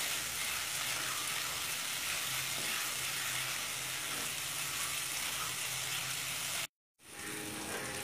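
Onion and spice masala sizzling steadily in hot oil in a pan as it is stirred and sautéed down with a wooden spatula. The sizzle cuts out for a moment near the end, then returns.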